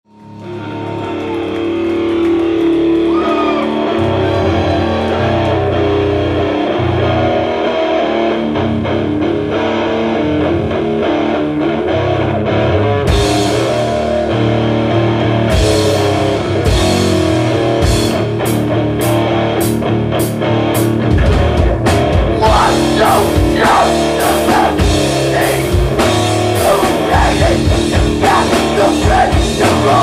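Live heavy rock band playing: distorted electric guitars holding low sustained chords, with drum-kit cymbal crashes coming in about halfway through and full drumming in the last third.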